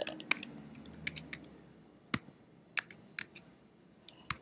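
Keystrokes on a computer keyboard as an email address is typed: a string of irregular, separate key clicks that grow sparser in the second half.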